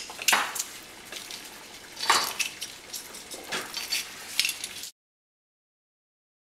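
Metal garlic press being worked over a bowl: a few short clinking, scraping strokes as garlic is loaded and squeezed. The sound cuts off abruptly near the end.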